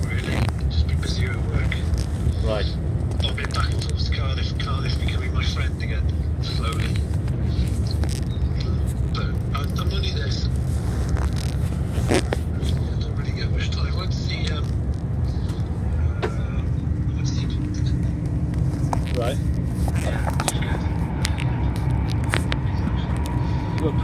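Steady low rumble of a Class 800 train's carriage interior as it runs slowly, at about 14 mph, with voices talking in the background. A faint steady tone joins in for the last several seconds.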